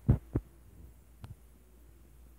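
Faint, steady low hum with two soft thumps at the very start and a single sharp click about a second in.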